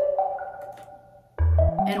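Playback of a pop/R&B production's synth pluck melody doubled by an organ sound: a note rings and fades away, then about 1.4 seconds in a deep kick lands together with the next notes.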